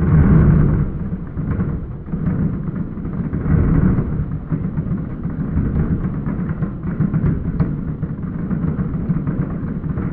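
Aerial fireworks shells bursting in rapid, overlapping booms that merge into a continuous rumble, loudest at the very start and again about three and a half seconds in.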